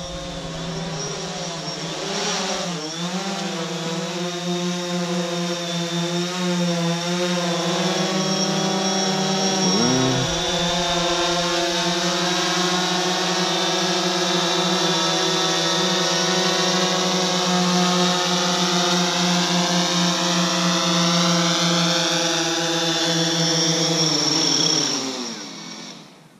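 DJI Phantom 4 quadcopter's four propellers buzzing in a steady, wavering hum that grows louder as the drone comes down close. Near the end the pitch falls and the motors spin down and stop as it sets down.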